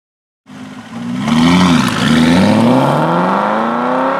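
Aston Martin V8 Vantage's 385-horsepower V8 engine accelerating hard, coming in suddenly about half a second in. Its pitch climbs, dips briefly about a second later, then climbs steadily again as the car pulls away.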